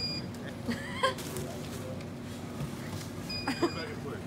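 Motorized supermarket mobility cart driving: its electric motor runs with a steady low hum, and a high warning beep sounds once near the end.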